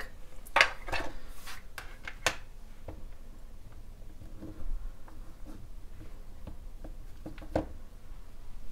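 Handling sounds of stamping supplies: a plastic ink pad case clicking open and being set down, then small wooden alphabet stamp blocks knocking together as they are picked out of their tray. Several sharp clicks and knocks come in the first few seconds, with quieter shuffling after and one more knock near the end.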